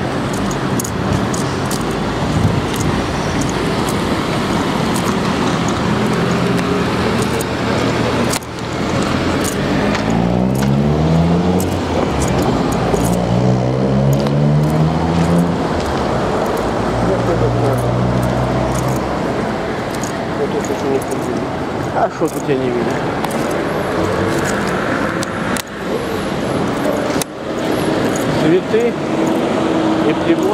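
Street traffic with a motor vehicle accelerating away through its gears: the engine note climbs and drops back three or four times in the middle of the stretch. Steady traffic noise and handheld-microphone knocks run underneath.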